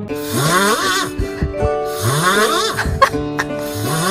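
Snoring, in long breaths that rise in pitch and repeat about every two seconds, over background music with held notes.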